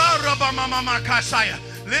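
Worship music: sustained held chords with a voice riding over them.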